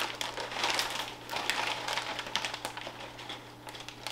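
Close-up crunchy chewing of a chip topped with ceviche: a run of irregular crackles, fading somewhat toward the end.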